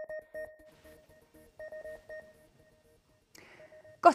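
Electronic news theme music made of short, pulsing beep-like tones in a steady rhythm, fading out about two seconds in.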